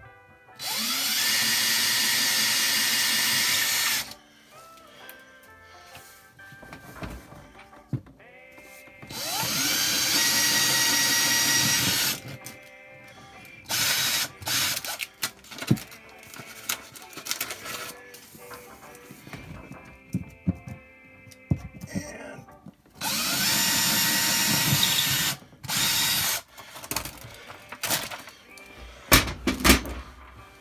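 Cordless drill spinning up and boring holes through drywall for drywall anchors: three long runs of a few seconds each, the pitch rising as each one starts, and a short burst near the end. Clicks and knocks from handling the drill come between the runs.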